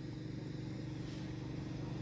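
Steady outdoor background noise at a low level: a low rumble with a faint steady hum, and distant road traffic.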